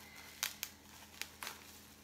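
Clear plastic wrapping crinkling in a few sharp crackles as hands handle a package of bath bombs.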